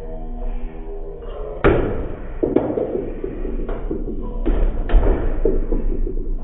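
Foosball table in play: a loud sharp knock about one and a half seconds in, then irregular knocks and clatter of the ball being struck by the figures and hitting the table. Music plays underneath.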